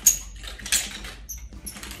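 Metal-chain nunchucks being swung through a wrist roll and caught. There is a sharp metallic clack at the very start and another just under a second in, with the chain clinking and squeaking briefly in between.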